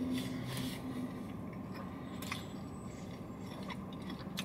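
Faint close-up chewing of a mouthful of wrap with hush-puppy-breaded fish strips, with a few soft crunches of the breading.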